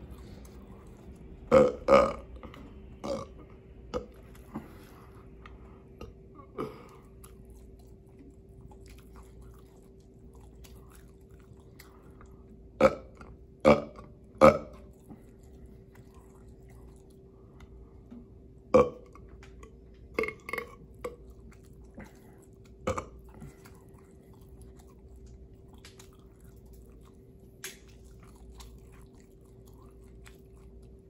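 A man burping loudly several times in clusters, shortly after a swig from a can, with mouth-close chewing between the burps, over a faint steady hum.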